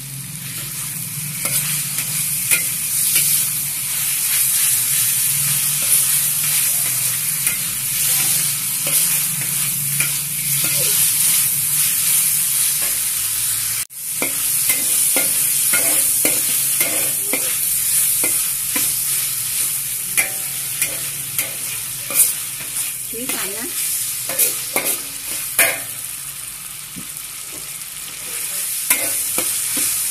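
Diced pork sizzling in hot oil in a wok while a metal spoon stirs it, with frequent scrapes and clinks of the spoon against the pan. The sizzle breaks off for an instant about halfway through.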